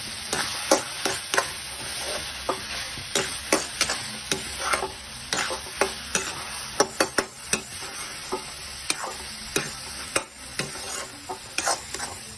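Flat steel spatula scraping and knocking against a steel pan as grated carrot halwa is stirred and fried after the sugar has gone in, with a steady sizzle underneath. The strikes come irregularly, about two or three a second.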